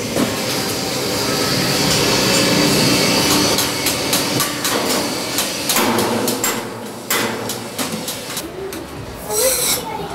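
Street ambience in a metalworking lane: a steady background hum with faint voices, and a cluster of sharp knocks about six to seven seconds in, with a few more near the end.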